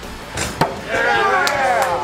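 A thrown knife hits a wooden plank target with a single sharp thunk about half a second in. A person follows it with a long rising-and-falling 'ooh'.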